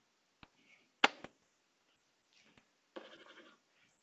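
Stylus tapping and scratching on a tablet screen while writing: one sharp tap about a second in, a lighter tap just after it, and a short stretch of soft scratching about three seconds in.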